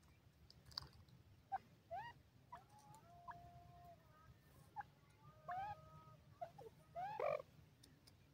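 A grey francolin giving soft, short calls: a run of brief notes, some rising, some held as short flat whistles, the loudest about seven seconds in. Faint clicks fall between the calls.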